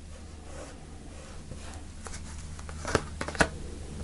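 Tarot cards being handled and slid on a cloth-covered table, faint at first, then two sharp card snaps about three seconds in as the next card is pulled from the deck.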